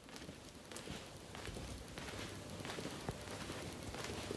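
Faint hissing ambience with scattered crackles, slowly growing louder.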